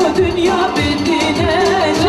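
A woman sings a Kurdish song through a microphone, her melody wavering and ornamented, over an electric keyboard accompaniment and a steady drum beat of about two hits a second.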